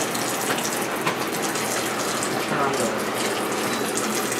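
Steady rush of running, splashing water from a reef aquarium's circulation and plumbing.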